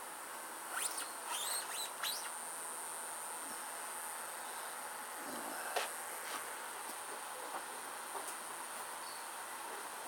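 Steady high-pitched insect drone, with a few short bird chirps in the first two seconds and a single sharp click near six seconds.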